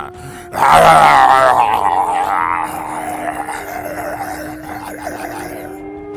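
A long, loud creature scream mixed with growling, played as the cry of a Bigfoot. It starts suddenly about half a second in and slowly fades away, over a steady music drone.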